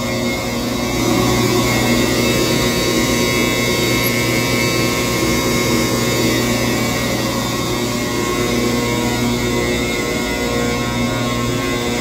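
The cement silo's blower running steadily, a loud drone of many even tones, blowing air that pushes powdered cement through the line into the truck.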